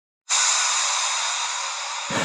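A sudden, steady hissing noise that starts a moment in and eases off slightly.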